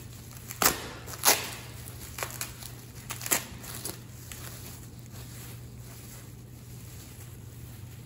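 Plastic wrapping crinkling as gloved hands pull it off a small plaster mould, with a few sharp crackles in the first three and a half seconds, then softer rustling.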